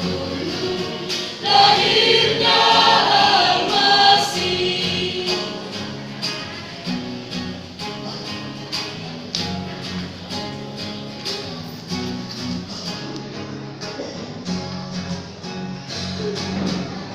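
Mixed vocal group of women and men singing together as a choir, loudest in the first few seconds, then softer over a regular beat.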